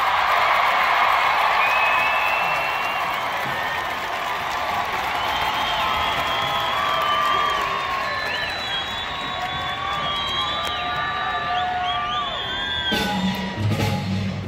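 Marching band in a stadium with the crowd cheering and whooping, strongest over the first few seconds. Held wind notes sound through the middle, and the percussion comes back in with low drum strokes near the end.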